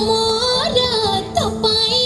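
Odia film song playing: a singing voice holds long notes that slide between pitches, over instrumental backing.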